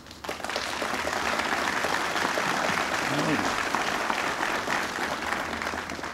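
Audience applauding, starting suddenly just after the opening and holding steady until speech resumes at the end.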